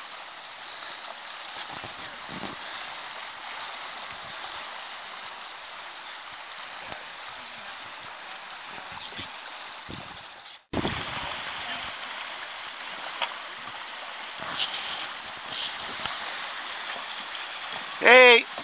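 Steady rushing of fast-moving river water over a shallow riffle. It cuts out for an instant about ten and a half seconds in, then carries on slightly louder.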